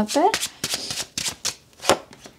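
A tarot deck handled and shuffled by hand: a quick, irregular run of card snaps and riffles, with a louder snap near the end as a card is pulled from the deck.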